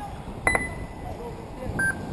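Two electronic beeps from the race's lap-timing system, marking RC cars crossing the finish line. The first is a sharp, higher beep about half a second in, lasting about half a second. The second is a shorter, lower beep near the end. Faint voices can be heard in the background.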